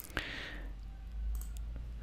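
Two computer mouse clicks in quick succession at the start, then a faint low hum.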